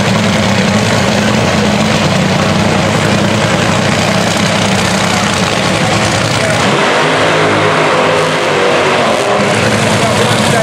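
Top Fuel dragster's supercharged nitromethane V8 idling loudly, its note changing about seven seconds in.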